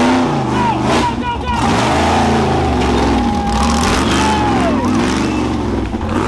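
Off-road rock-racing buggy engine revving hard in repeated bursts, its pitch rising and falling as it climbs a rock ledge, with spectators' voices shouting over it.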